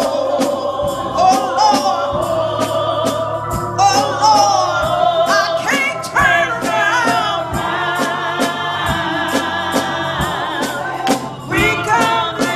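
Gospel song sung by a small group of women's voices, over a steady beat of sharp hits.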